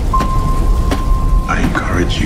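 Trailer sound design: a heavy, continuous low rumble with a noisy, storm-like hiss, under a steady high-pitched tone that stops about a second and a half in. A few sharp clicks sound over it, and a short voice-like sound comes near the end.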